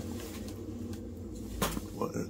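A low, steady hum with one short click about one and a half seconds in.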